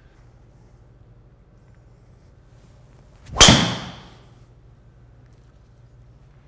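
Callaway Mavrik driver striking a golf ball once, about three and a half seconds in: a sharp, loud crack with a short high ring that dies away quickly.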